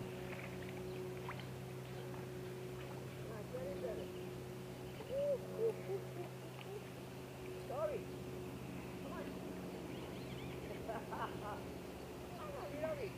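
A steady low motor hum, with a few faint, brief voice sounds over it around the middle and again near the end.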